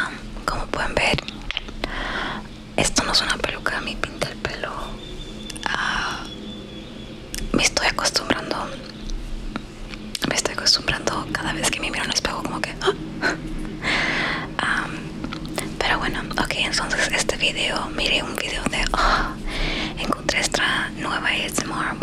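A woman whispering in Spanish close to the microphone.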